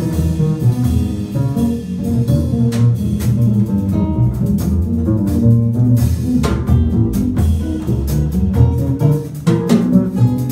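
Live jazz trio playing: acoustic guitar and double bass carry the notes over a drum kit, with many short plucked and struck attacks.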